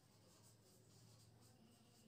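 Near silence, with faint scratching of a marker writing on a whiteboard.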